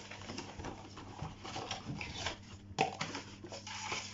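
Cardboard box being opened by hand and a plastic automatic air-freshener dispenser slid out of it: soft rustling and scraping, with a sharper click a little under three seconds in.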